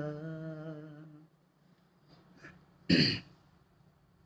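A man's sung voice holds the final note of a Malayalam song, wavering slightly, and fades out about a second in. After a pause, a single short, loud throat-clearing comes near the end.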